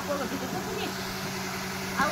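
Electric pedestal fan running with a steady motor hum, with faint voices over it.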